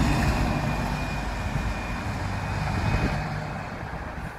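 Wright StreetLite single-deck bus's diesel engine pulling away, a steady low engine note that fades gradually as the bus drives off.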